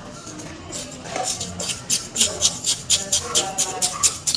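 Plastic spoon scraping and stirring shaved ice in a plastic cup, in quick even strokes about four or five a second, starting about a second in.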